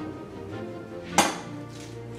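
Background music, with one sharp crack about a second in: an egg being cracked on the rim of a saucepan.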